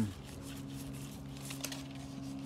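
A paintbrush stroking diluted white latex paint onto a thin avocado branch, with faint bristle scratches and leaf rustle near the middle, over a steady low hum.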